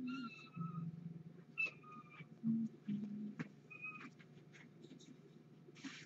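A cat giving three short, high mews, each a steady tone, with light knocks and handling sounds between them.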